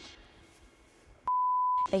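A single steady electronic beep tone, about half a second long, starting a little past a second in, with all other sound muted beneath it: a censor bleep dubbed over a spoken word (a social media handle) in the edit.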